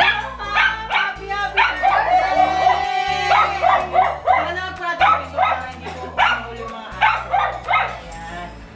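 A dog barking and yipping repeatedly, about twice a second, with a short break near the middle, over background music with a steady bass line.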